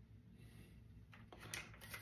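Near silence: room tone, with a few faint small clicks in the second half.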